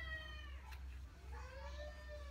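A cat meowing twice: a drawn-out call trailing off in the first half second, then a second meow about a second in whose pitch rises and falls.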